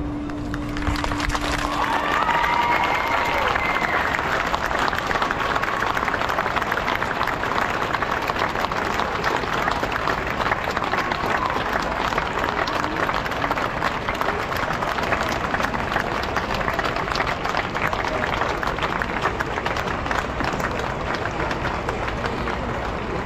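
A large outdoor crowd applauding steadily at the end of a piece, as the last held note of the ensemble's music dies away about two seconds in.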